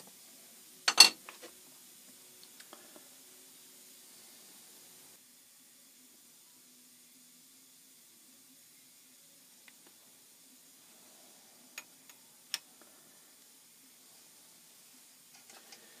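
A single sharp metallic clack about a second in, then a few light ticks and two more small clicks later, over quiet shop room tone: the tool post and compound of an Atlas 10-inch lathe being loosened and adjusted by hand.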